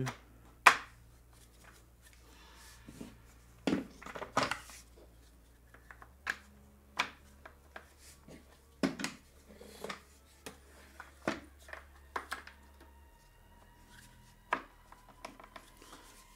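Plastic caster wheels being pushed and knocked into the sockets of a gaming chair's star base: a string of sharp knocks and clicks at irregular intervals, the loudest near the start.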